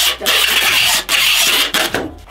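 Packing tape being pulled from a handheld tape gun across a cardboard box: two long pulls of just under a second each, with a short break between.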